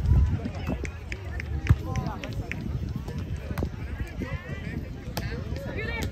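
Players' voices and calls during a grass volleyball rally, with sharp smacks of the ball being played. The loudest smack comes a little under two seconds in.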